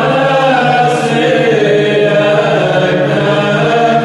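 Orthodox church chant: voices sing a slow melody over a steady, held low drone.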